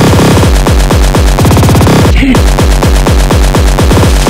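Terrorcore (extreme hardcore techno) track: a heavily distorted kick drum hits about four to five times a second, each hit dropping in pitch. There is a brief break a little over two seconds in, then the kicks resume.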